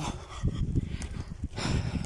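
Footsteps crunching on packed snow while walking, with a low rumble of handling and wind on the microphone.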